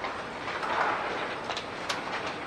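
Conference-room background noise: a steady rustling, shuffling haze from people moving about, with a sharp click just before the end.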